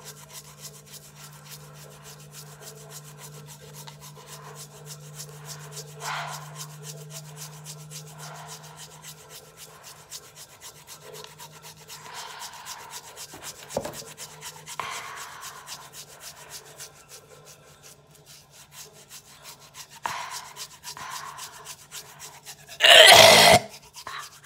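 Toothbrush bristles scrubbing a tongue through toothpaste foam in fast, wet back-and-forth strokes, with a loud burst near the end.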